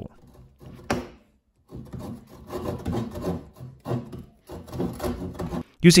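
Tenon saw cutting into softwood timber clamped in a vice, a run of back-and-forth sawing strokes starting about two seconds in, after a single knock about a second in.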